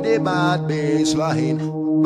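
Breakbeat dance music: sustained synth tones under a chanted vocal sample, with drum hits.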